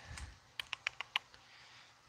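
About half a dozen light clicks and clacks over a second or so: CPU cooler backplates and small parts knocking together as a hand sorts through a box of them.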